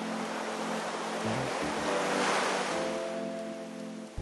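A rushing wash of sea-wave noise that swells to a peak about halfway through and then fades. Soft, sustained music notes come in under it during the second half.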